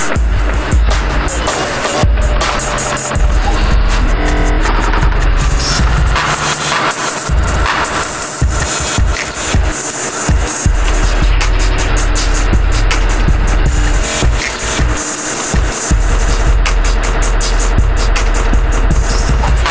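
Harsh electronic noise music: a dense, loud wall of processed sound with a deep bass layer that drops out a few times, and the top end chopped into rapid stuttering cuts.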